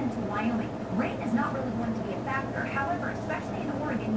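A woman's voice speaking continuously, a television weather presenter heard through a TV's speaker, over a steady low hum.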